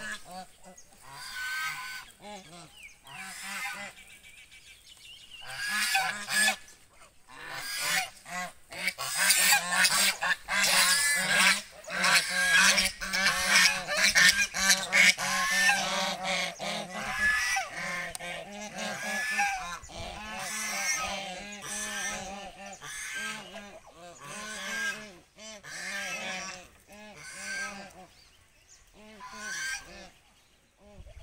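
A flock of domestic geese honking, many short calls overlapping in a near-continuous chorus, loudest through the middle and thinning out near the end.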